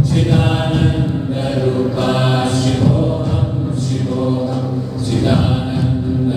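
Devotional Sanskrit chant music: voices singing long held phrases over a steady low drone.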